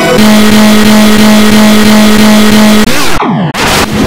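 Heavily distorted, effects-processed audio: a loud buzzing tone held at one pitch for nearly three seconds, then pitch glides falling away and choppy, cut-up glitch noise near the end.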